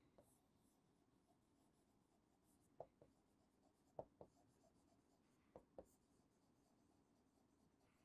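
Very faint chalk writing on a blackboard: a few soft taps and scratches as words are written, otherwise near silence.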